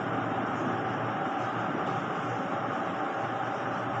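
Steady, even background noise, a hiss-like rumble with no distinct events and no speech.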